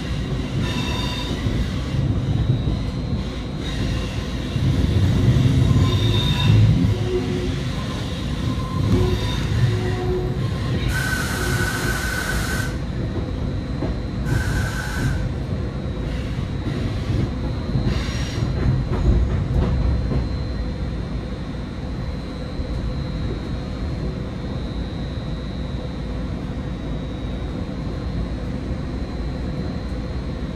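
Caltrain passenger train running on the rails, heard from inside the car: a steady low rumble with thin high wheel-squeal tones. Two hissing bursts cut through about eleven and fourteen seconds in, the first long and the second short.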